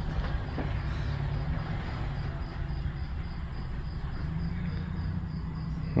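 A steady low rumble, with crickets chirping in an even rhythm in the background.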